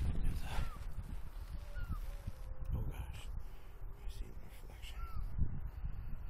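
Wind buffeting the microphone with a steady rumble, and a bird calling faintly a few times, short downward-curving calls.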